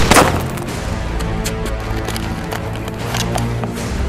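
A single gunshot at the very start, sharp and followed by a ringing tail, then background music with a steady beat.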